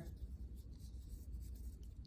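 Faint rubbing of a glue stick on construction paper as a paper cutout is glued down, over a low steady hum.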